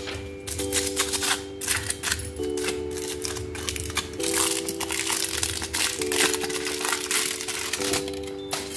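Gold foil wrapper crinkling and tearing in quick, irregular crackles as it is peeled off a chocolate bar by hand. Background music of sustained chords runs underneath, changing chord about every two seconds.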